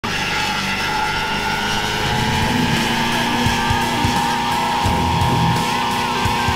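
1970 Buick Skylark doing a burnout: a long, steady high tyre squeal over the engine held at high revs.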